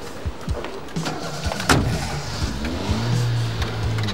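A car door shuts with a loud thump a little before halfway, then the car's engine starts and revs up, settling into a steady low run near the end.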